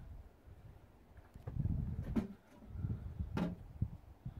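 Uneven low rumble of wind buffeting the microphone, with two sharp clicks about two and three and a half seconds in.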